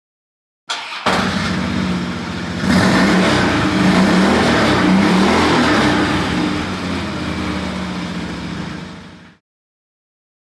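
A motor engine running and revving. It starts about a second in, grows louder near three seconds, then fades out before the end.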